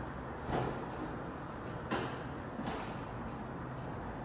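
A window latch and frame being worked open: three short knocks and clunks over a steady low hum of room noise.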